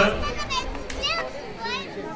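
Children's high voices calling out over crowd chatter, a few short calls that swoop up and down in pitch.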